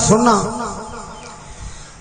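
A man's voice preaching in a drawn-out, sing-song delivery, ending about half a second in; the rest is a quieter pause as the sound trails off.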